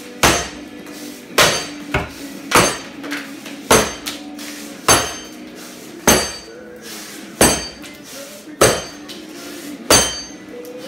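Axe chopping a tulip poplar standing block: about eight hard, regular strikes roughly every 1.2 seconds, each with a brief metallic ring, one followed by a lighter second knock.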